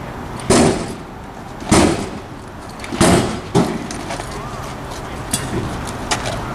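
Metal pry bar striking and forcing a wooden back door: four loud bangs over about three seconds, the last two close together.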